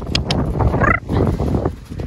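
Storm wind buffeting the phone's microphone in a low, steady rumble while a horse is lunged, with a few sharp clicks at the start and a short chirping sound about a second in.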